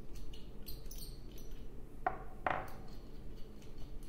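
Small metal bracket parts and screws handled and clinking together as the screws are taken out, with light scattered ticks and two sharp clinks about two seconds in, half a second apart.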